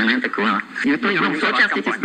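A man's recorded Czech speech played back from a hand-cranked wooden street-organ box, running on without a break. It sounds thin, with no bass, and its pitch wavers.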